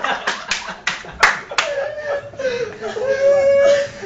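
Two people wrestling on a sofa: several sharp hand smacks in the first second and a half, then a long, drawn-out high-pitched vocal cry that wavers slightly in pitch, with laughter around it.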